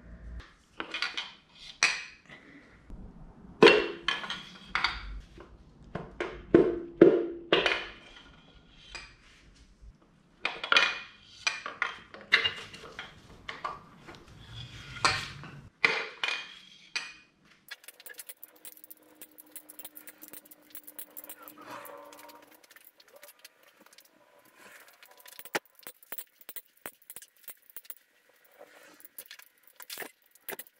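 Metal engine parts clinking and clanking as pistons, connecting rods and rod caps are pulled from a V8 block and set down: clusters of sharp, ringing knocks. About halfway through it goes much quieter, leaving only a faint hiss and a few light ticks.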